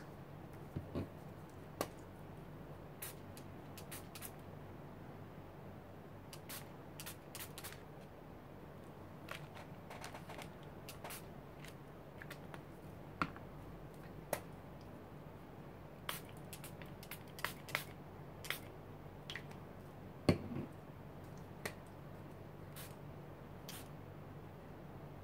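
Hand-pumped mist spray bottles of colour spray, puffed onto paper in short irregular bursts, with a few clicks of the bottles being handled, over a faint steady hum.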